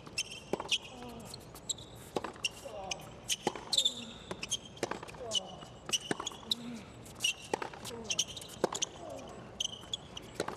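Tennis rally on a hard court: sharp racket strikes and ball bounces about every half second to a second, with short squeaks of sneakers on the court.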